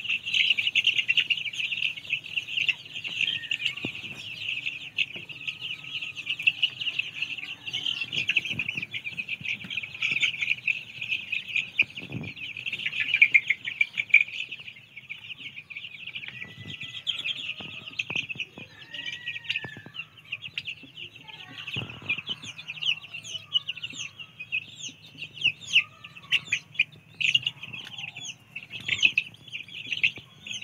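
A large flock of month-old country (nattu kozhi) chicks peeping together in a dense, continuous chorus, with separate chirps and calls rising out of it all through. A faint low steady hum runs underneath.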